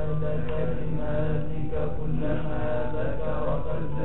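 Male voices chanting a prayer on the Prophet Muhammad (salawat) in a slow, drawn-out melody, with a steady low hum underneath.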